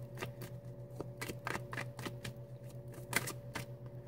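A tarot deck being shuffled by hand: quick, irregular card clicks and slaps, a few a second, the loudest a little after three seconds in.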